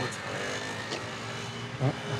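A car engine running with a steady hum, and a man's brief words near the end.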